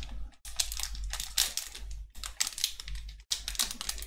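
Foil wrapper of a Pokémon card booster pack crinkling and crackling as it is gripped and torn open, in quick runs of crackles with short pauses.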